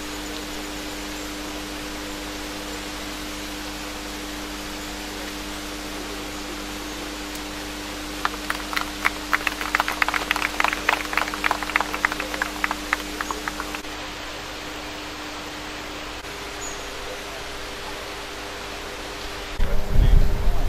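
A small group of people clapping for about five seconds, starting around eight seconds in, over a steady hiss with a low electrical-sounding hum.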